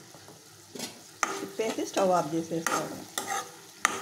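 Spatula stirring thick ridge gourd and egg curry in an aluminium kadai over a light sizzle, starting about a second in, with scraping squeaks and several sharp knocks of the spatula against the pan.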